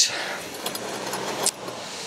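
Street traffic noise, a steady rushing like a car passing, fading about three-quarters of the way through, with a few small clicks and one sharp click.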